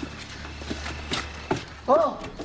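Faint scattered soft steps or rustles over a low steady hum that fades about a second in, then a man's loud shout of "Oh!" right at the end.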